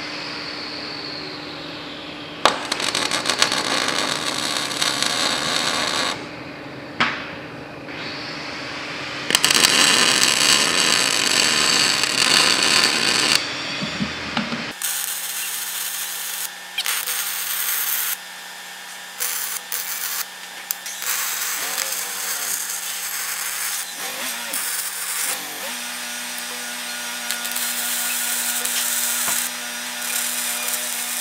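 Electric arc welding on a steel frame: the arc crackles and hisses in runs of a few seconds, stopping and starting between welds.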